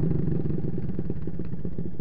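Small riding lawn mower engine idling close by with a rapid, even putter, easing down from a rev in the first moments and then holding steady.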